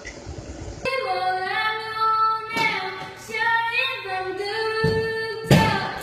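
A girl singing a slow melody with long held notes, starting about a second in. Near the end a loud thud cuts in.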